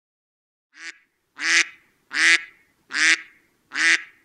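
Cartoon duck voice sound effect: five loud pitched calls in an even run, about one every 0.7 s, the first one softer.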